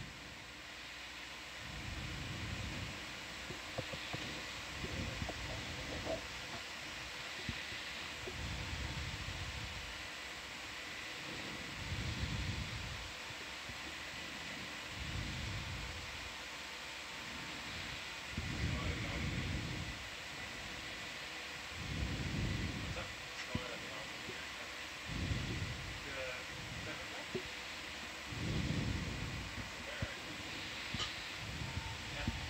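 Steady background hiss of control-room equipment, with faint, muffled voices swelling up every couple of seconds.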